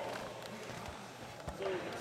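Low murmur of voices in a large gymnasium, with one sharp knock about one and a half seconds in, just before a man starts to speak.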